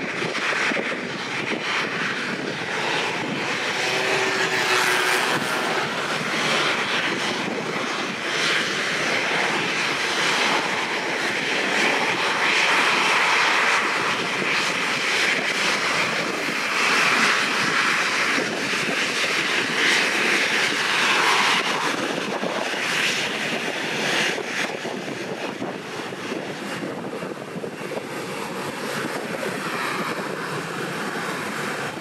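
Boeing 737's twin turbofan engines running at taxi power: a continuous rushing whine that swells and eases as the jet taxis and turns, dropping slightly near the end.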